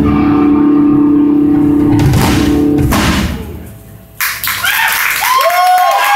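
Live rock band (electric bass, guitar and drum kit) holding a loud chord with cymbal crashes, which dies away about three seconds in. After a short lull comes a sharp drum hit, then a few bending, wavering notes near the end.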